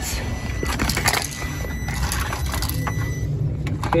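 Handling noise: scattered clicks and rustles of test leads and a probe being moved about on cardboard, over a steady low rumble, with a faint thin high tone that stops about three seconds in.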